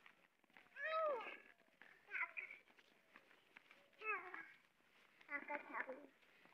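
Four short, high-pitched vocal calls, each sliding up and down in pitch, spaced a second or two apart.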